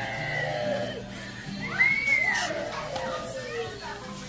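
Children's voices over background music in a busy room, with one high voice rising and falling about two seconds in.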